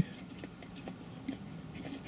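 Faint, scattered small clicks and rustles of fingers reaching into a cardboard Pringles can and working a crisp loose from the stack.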